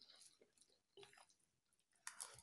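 Near silence with faint sounds of eating: soft chewing of rice and a couple of light clicks, near the start and about a second in.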